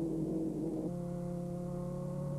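Racing car engines running at steady revs on a warm-up lap. The note holds steady, then changes to a lower, fuller tone about a second in.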